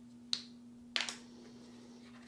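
Two short, sharp clicks about two thirds of a second apart as a 3D-printed plastic stamp is pried off damp leather and handled.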